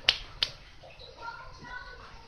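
Two sharp clicks about a third of a second apart.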